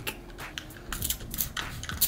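Plastic trigger sprayer on a glass spray bottle giving a few short spritzes, each a quick click with a brief hiss of mist.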